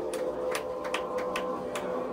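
Live band playing: sparse, irregular drum and cymbal hits, about five in two seconds, over a steady ringing amplified tone.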